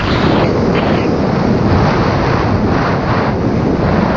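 Loud, steady rush of wind buffeting the microphone, with a deep rumble, from fast speedflying flight low over snow.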